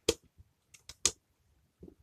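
Sharp plastic clicks from resetting a tripped transparent DIN-rail RCD breaker by hand. Two louder snaps about a second apart, with a few lighter clicks between them.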